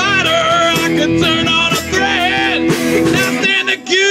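Live rock band playing with electric and acoustic guitars and drums, with bending pitched melody lines over the top; the deepest bass drops away about three seconds in.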